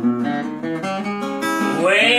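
Acoustic guitar strumming chords in a slow country-blues rhythm. A man's singing voice comes in near the end.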